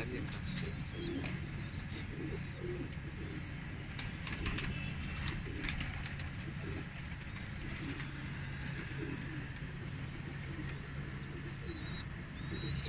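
Domestic pigeons cooing softly and repeatedly, with a few short high chirps, over a steady low hum.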